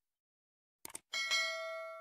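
Subscribe-button sound effect: a couple of quick mouse clicks a little under a second in, then a notification bell chime that rings and slowly fades.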